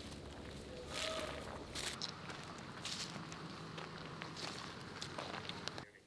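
Boots of a small group of soldiers walking on a leaf-strewn gravel road, irregular steps, with a faint low rumble underneath. The sound stops abruptly near the end.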